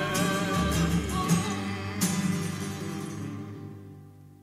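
Closing chord of an acoustic folk song: strummed acoustic guitars and double bass with voices holding the last notes, a final strum about two seconds in, then the chord fading away.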